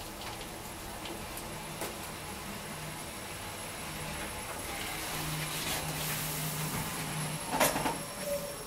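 KONE MonoSpace machine-room-less traction elevator car travelling upward, heard from inside the car: a steady low hum and ride noise that grows somewhat louder over the last few seconds. A sharp clunk comes near the end.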